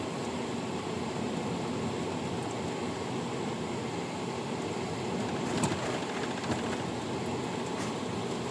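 Steady road and engine noise heard inside a moving car's cabin, with a single sharp click about five and a half seconds in.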